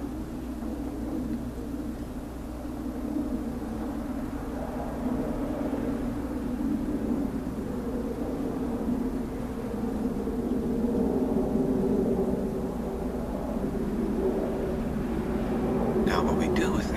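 A steady low rumble, like an engine or motor, slowly growing louder.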